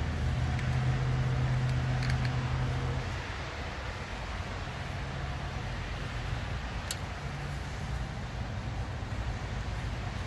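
Steady low mechanical hum over a constant hiss, dropping in level about three seconds in and rising again about seven seconds in. A couple of faint light clicks come from a small screwdriver working the generator's brush holders.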